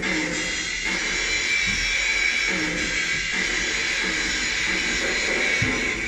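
A steady hiss with a constant high whine, over faint background music or singing.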